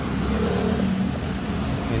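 A motor vehicle engine running with a steady low hum.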